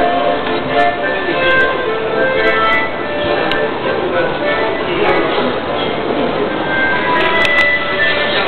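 Street accordion music: a melody played continuously on held, shifting notes, with voices of people in the street mixed in.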